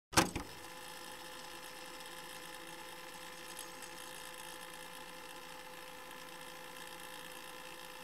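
A sharp click in the first half-second, then a steady low-level hum with hiss and a few faint steady tones.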